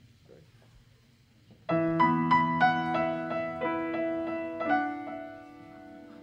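Piano chords played on a stage keyboard: after a quiet moment, sustained chords start about two seconds in, shift to a new chord about three seconds later, and ring out softer toward the end.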